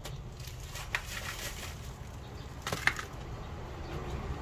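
Soft rustling and scraping of gloved hands working succulents and soil into an earthenware jar, with two sharp clicks, about a second in and near three seconds, over a steady low rumble.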